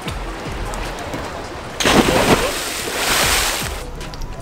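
A big splash as a person in a life jacket jumps feet-first off a catamaran into the sea: a sudden heavy impact a little under two seconds in, then about two seconds of spray and churning water that dies away.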